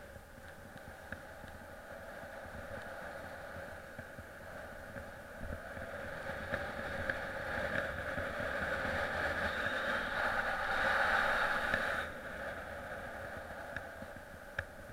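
Skis sliding fast over freshly groomed snow: a steady hiss that grows louder with speed and drops off suddenly about twelve seconds in, with wind rumbling on the microphone underneath.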